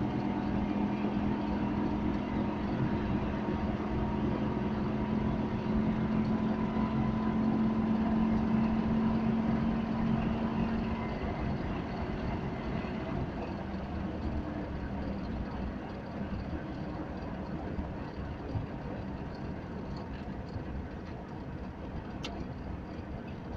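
Wartburg 311's three-cylinder two-stroke engine heard from inside the cabin while driving, a steady drone for the first half that fades and grows quieter from about halfway through.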